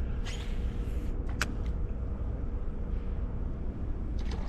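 Steady low background rumble with a faint steady hum, broken by one sharp click about a second and a half in.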